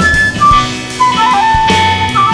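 Instrumental passage of a rock song: a lead melody of held notes stepping down in pitch over drums and bass.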